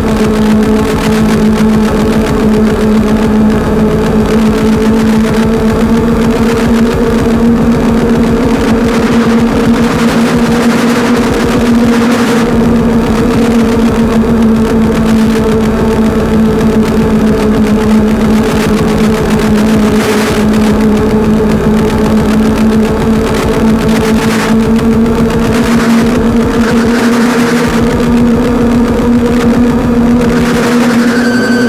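Loud, dense distorted rock or metal music: a wall of distorted guitar holding one low chord steadily over a rapid pulse, with no break.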